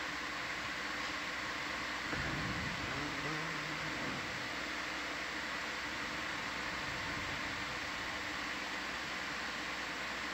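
Steady hiss and low hum of equipment and ventilation in the ROV control room, heard through the dive audio feed, with a faint indistinct murmur about two seconds in.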